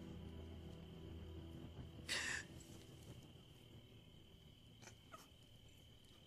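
Faint night ambience of crickets, a steady high chirring drone, under soft sustained film-score music that fades out in the first couple of seconds. A brief hiss stands out about two seconds in.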